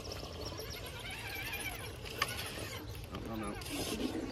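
Radio-controlled rock crawler truck driving down a rock ledge, its small electric motor and gears whining with wavering pitch, plus a single sharp click about two seconds in. Faint voices underneath.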